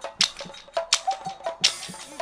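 Nagara naam accompaniment: drums struck in a few sharp, irregularly spaced strokes, with a longer, brighter stroke near the end.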